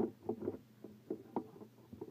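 A handful of light, irregular knocks and clicks over a low steady hum.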